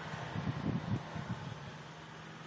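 Car cabin noise while driving slowly: a low, uneven rumble of engine and road that eases off near the end.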